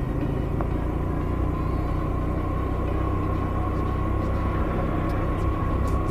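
Rusi Gala 125 scooter's 125 cc engine and drivetrain running at a steady riding speed: a steady rumble with a thin, steady high note on top. The rider calls it really noisy and puts the noise down to worn rear bearings.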